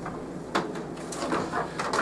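Sheets of copy paper handled and laid into a copier's large-capacity paper tray, with one sharp click about half a second in.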